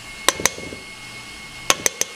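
Fine-mesh stainless steel sieve knocking against the rim of a stainless steel mixing bowl as it is shaken to sift flour. Two quick pairs of light metallic taps, one pair just after the start and another near the end.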